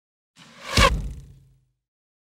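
Whoosh sound effect for an intro logo sting, with a deep boom underneath. It swells to a peak just under a second in and dies away by about a second and a half.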